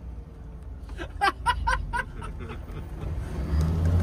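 Low engine and road rumble inside a moving SUV's cabin, with a short burst of laughter about a second in. The rumble grows louder near the end.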